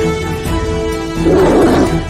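Music of steady held tones, with a lion's roar sound effect about a second in that lasts under a second and is louder than the music.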